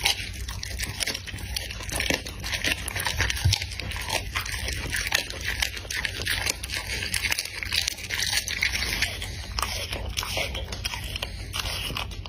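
A dog biting and chewing a piece of raw meat: an irregular, continuous run of chomps and crunching.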